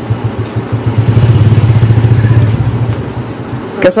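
An engine running with a low, steady pulsing note, growing louder about a second in and easing off after about two and a half seconds.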